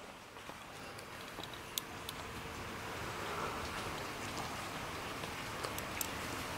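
Steady rain outside, a faint even hiss with a few light ticks of drops.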